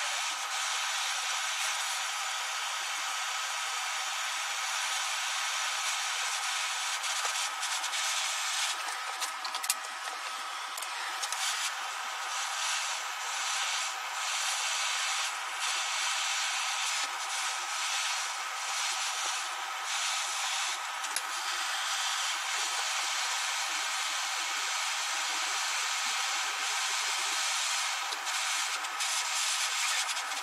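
MAPP gas hand torch burning with a steady hiss as it heats a small steel punch toward a non-magnetic glow for hardening.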